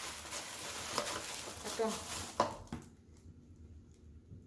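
Packaging rustling and crackling as items are unwrapped from a cake-decorating kit, with scattered sharp crackles; the rustling stops a little under three seconds in.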